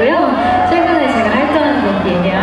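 A woman talking into a handheld microphone through a loudspeaker system.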